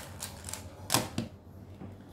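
Plastic speed cube being turned fast, a run of quick clicking turns, then a louder knock about a second in as a cube is set down on the table, followed by quieter handling.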